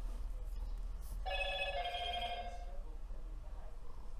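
A short electronic alert tone, like a phone ringing or chiming, starting about a second in and lasting about a second and a half, in two steps of steady pitches.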